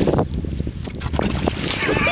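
A wooden paddle splashing and churning the river water beside a woven bamboo coracle, under a heavy rumble of wind on the microphone. A voice comes in near the end.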